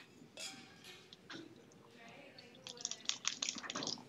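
Cooking water draining from a stainless steel pot through its lid into a second pot, faint at first, then a run of quick spattering clicks in the last second or so.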